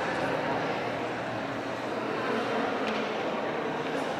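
Steady background murmur of indistinct visitors' voices in a large museum hall.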